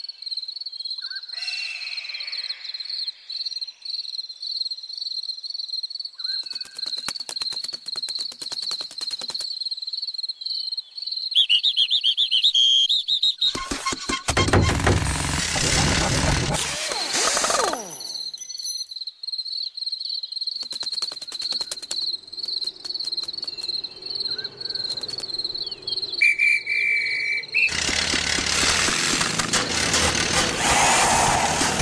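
Animated-cartoon insect sound effects: a steady, pulsing high chirp runs through most of the stretch, broken by a stretch of rattling clicks and two loud noisy bursts, one in the middle and one near the end.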